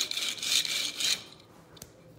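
The plastic wheels of a Hot Wheels die-cast car are rubbed back and forth on crocus cloth, polishing the sanded wheels. It is a scratchy rubbing in a few strokes that stops about a second in, followed by a faint click near the end.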